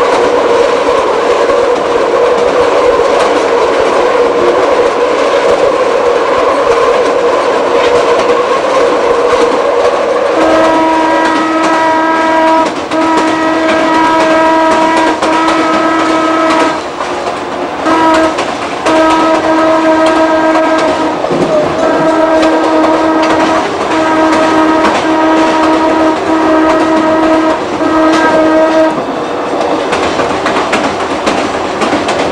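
Chicago L rapid transit train running on the rails, heard from inside the front car. About ten seconds in, its horn starts sounding a steady single-pitched tone in a long run of blasts with short breaks, stopping shortly before the end.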